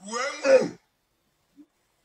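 A short vocal sound from a person's voice, an exclamation or throat-clearing under a second long, followed by silence.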